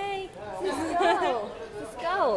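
Indistinct chatter of voices with no clear words, the pitch swooping up and down.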